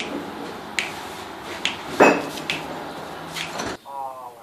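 Fingers snapping: a series of short, sharp snaps about one a second, the loudest about two seconds in.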